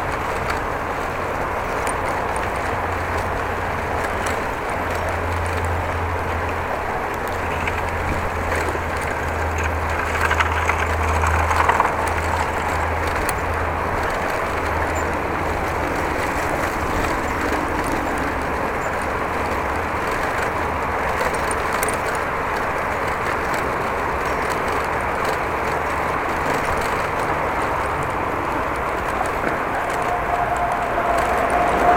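Steady rolling noise of a bicycle ridden along a herringbone brick-paved path, with a few short louder knocks about ten to twelve seconds in.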